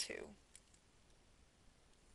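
A spoken word at the start, then near silence with a couple of faint, short clicks about half a second in.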